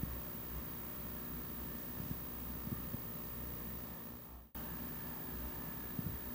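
Faint, steady background hiss with a low rumble, dropping out for a moment about four and a half seconds in.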